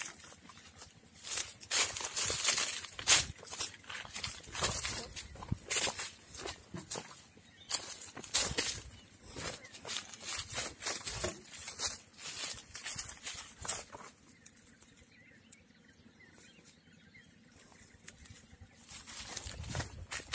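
Footsteps crunching and rustling through dry leaves and grass, an irregular run of crackles that dies down to near quiet for several seconds about two-thirds of the way through.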